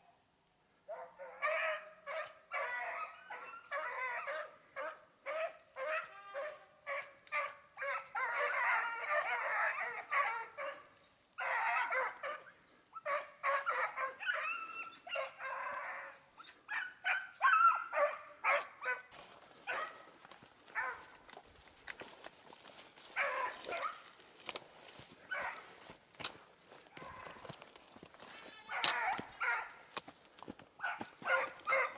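A pack of hunting hounds giving tongue as they run a trail. Their barks overlap in a near-continuous chorus for the first half, then come more scattered.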